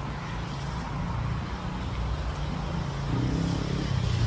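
Street traffic on a wet road: a steady low engine hum from passing and idling vehicles under a hiss of tyre and road noise.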